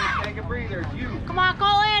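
Voices shouting on a youth baseball field, ending in one long, high, held yell about one and a half seconds in.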